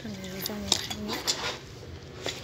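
A few sharp metallic clicks and clinks from a school bag being handled on a metal store shelf, with a voice in the background early on.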